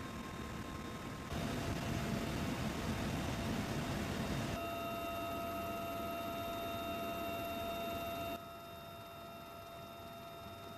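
Military helicopter noise heard from on board: a steady engine and rotor noise with a thin turbine whine, changing abruptly in level and tone three times, loudest from about one to four and a half seconds in.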